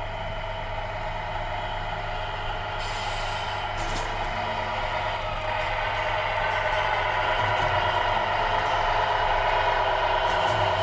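Tamiya 1/14-scale Scania radio-controlled truck running toward the microphone, a steady humming whine that grows louder as it approaches. A short hiss comes about three seconds in.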